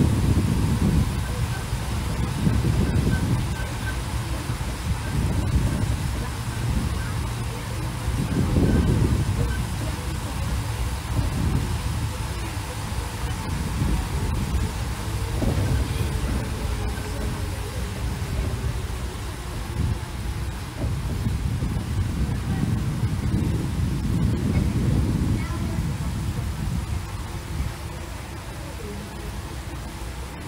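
Open-sided parking tram driving along a road: a low, uneven rumble that swells and fades every second or two, with wind buffeting the microphone.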